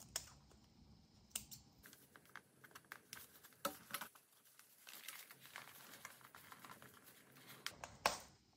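Near silence with faint, scattered small clicks and rustles of hands handling paper journal pages and ribbon while sewing.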